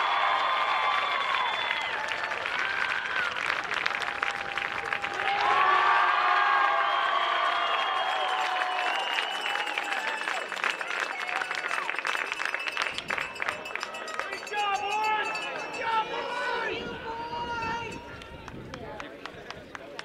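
A group of teenage boys cheering and yelling together, loudest in two bursts early on and about five seconds in, with clapping through the first half; the shouts and clapping thin out and die down near the end.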